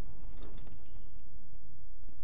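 Steady low rumble of a car driving, heard inside the cabin through a dash camera's microphone, with a few faint clicks about half a second in.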